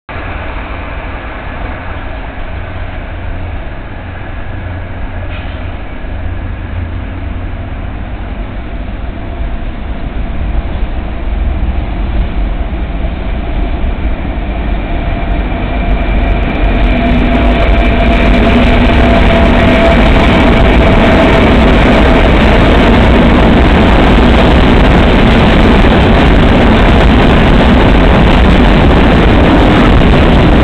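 Train noise that grows louder through the first half, then a loud, steady rumble and clatter of wheels on rail as a DB class 152 electric locomotive hauling a freight train of hopper wagons runs past close by, with a steady whine over it.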